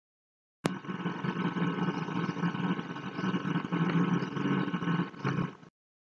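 A sharp click, then a steady low humming background noise that cuts off abruptly near the end.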